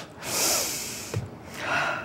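A person's breathy laugh: an airy hiss of breath out starting about a quarter-second in and fading, then a second breath near the end.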